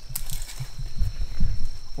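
Irregular low thuds and rustling of someone clambering down a steep slope of loose soil and leaf litter, loudest about a second in.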